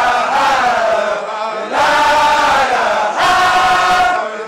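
Group of Baye Fall men chanting a Mouride religious chant (zikr) together, loud, in long held phrases with a short break about a second and a half in.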